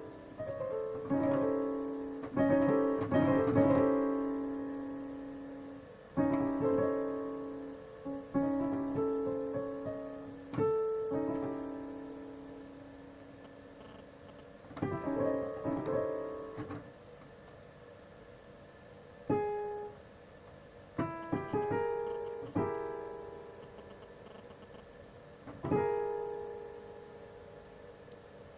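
Digital piano played slowly: chords and short phrases, each struck and left to ring and fade, with brief pauses between phrases.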